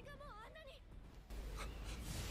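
Quiet audio from the anime episode being watched: a high, wavering voice in the first second, then a low rumble that starts about a second and a half in.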